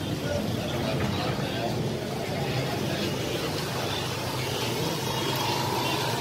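Street ambience: indistinct voices over a steady noise of motorbikes and other vehicle traffic.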